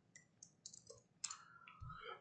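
Near silence with a few faint, scattered clicks, like a computer keyboard and mouse being used to change a chart's ticker.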